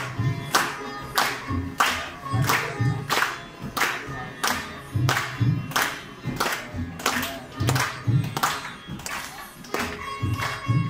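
Sitar and tabla playing a steady rhythmic passage. The tabla gives sharp strokes about twice a second, with deep bass strokes that bend in pitch, under the sitar's plucked notes. The violin is silent.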